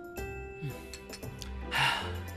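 Soft background music of sustained notes, with a short, loud, breathy exhale near the end, a satisfied 'ahh' after a drink from a bowl.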